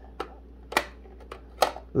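A few sharp plastic clicks and knocks as a puzzle cube is handled and pushed into a small storage case. The two loudest come about a second apart.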